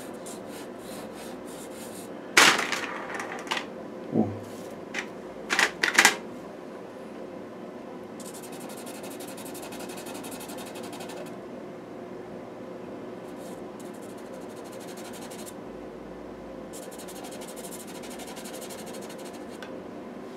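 Chalk-pastel pencil scratching over textured pastel paper: a few louder sharp strokes in the first six seconds, then stretches of quick, fine hatching over a steady low room hum.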